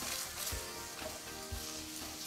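Tilapia fillets sizzling softly in a stainless-steel frying pan with lemon juice and water in it, under background music of held tones and a low beat about once a second.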